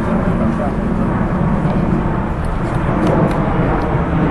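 Steady low outdoor rumble, with a few faint light clicks in the second half, typical of sparring sticks tapping.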